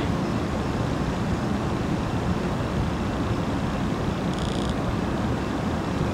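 Steady hum and hiss of an auditorium's air conditioning, with a brief faint high buzz about four and a half seconds in.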